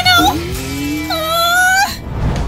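A cartoon character's high-pitched wailing cries, two drawn-out wails, the second rising slightly, over background music.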